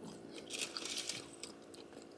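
Chewing a mouthful of toasted breakfast sandwich: a crackly crunch of the toasted bread for about a second, near the middle.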